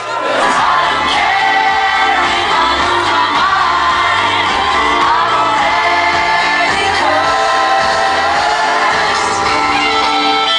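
Loud pop music with a sung vocal, filling a packed nightclub, with a brief dip in level at the very start.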